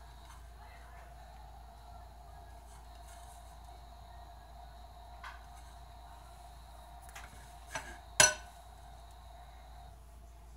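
A few light clicks and knocks as a ceramic plate of grated cheese is handled while the cheese is sprinkled over a pizza by hand. The loudest is a sharp clink about eight seconds in. A faint steady hum runs underneath.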